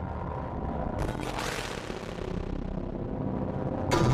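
Cinematic sound-design atmosphere from Rast Sound's Sounds of Mars Kontakt library: a low rumble with a hissing swell that rises about a second in and fades, then a sharp hit just before the end.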